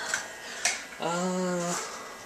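Handheld camera being moved and repositioned: rustling handling noise and a sharp click, then a man's short held 'uhh' lasting under a second.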